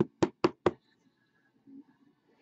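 Four quick knocks at an even pace, about four a second: a hard plastic card holder being knocked against the table.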